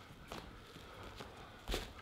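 Footsteps and small knocks of performers moving on a stage floor, with one louder thump near the end.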